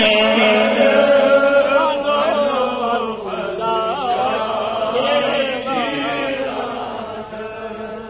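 A man chanting a Kashmiri naat (devotional poem in praise of the Prophet) solo, holding long notes with ornamented rising and falling turns. The voice fades gradually over the last few seconds.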